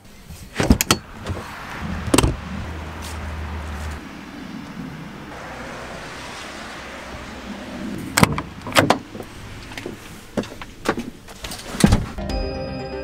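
Doors of a 1995 Fiat Ducato–based motorhome being worked: a latch click and a door knock near the start, then a steady faint hiss, then a run of clunks and a shutting knock near the end as the cab door is opened and closed.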